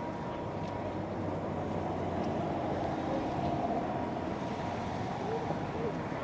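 A city bus driving past close by, its engine and tyres growing louder through the middle and then easing off, over steady street noise and people talking.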